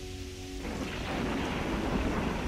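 Ambient music with a low steady drone that gives way, under a second in, to a swelling rushing wash of noise like a storm or heavy surf.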